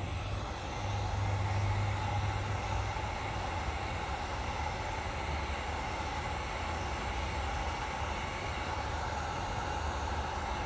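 Electric heat gun running steadily, its fan blowing hot air with a constant whir and a faint steady hum, used to force-dry a coil of clay that is too wet.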